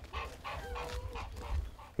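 Faint animal calls, one of them a short held call about a second in, over a low rumble on the microphone.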